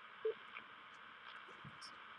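Faint, steady radio hiss from the receiver in the gap between transmissions on an amateur radio net, with one small faint blip about a quarter second in.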